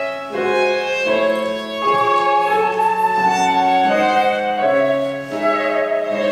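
Live classical chamber music from a trio of flute, violin and piano, the melody lines moving in held notes that change about every half second to a second.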